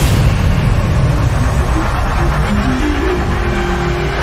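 Cinematic intro sound design: a deep, steady rumble with a whoosh at the start and a short run of stepped notes in the second half, building toward an impact.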